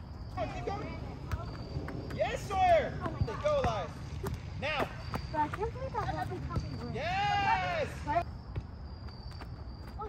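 Children shouting and calling out during play, with one long rising-and-falling shout about seven seconds in. Scattered soft thuds of a soccer ball being kicked and dribbled on artificial turf.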